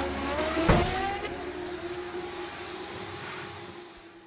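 Logo-reveal sound effect: a sharp hit about three-quarters of a second in, with a sweeping pitched whoosh, then a held tone that fades away.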